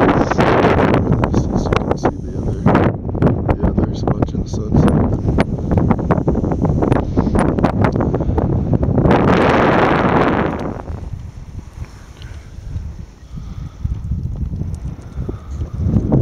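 Strong wind buffeting the camera microphone: a heavy, rumbling blast for most of the first eleven seconds, peaking in a loud gust about nine to ten seconds in, then easing off to a lighter rumble.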